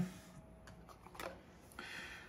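Faint clicks and light knocks as a hard plastic handheld portable espresso maker is picked up and handled, with a slightly louder knock about a second in.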